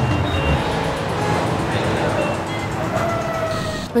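Busy street traffic: a steady din of engines and road noise with a few short horn beeps, under background music.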